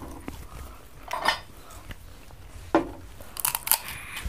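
Crunchy snacks being bitten and chewed: a few separate crisp crunches, then a quick run of sharp crackles near the end.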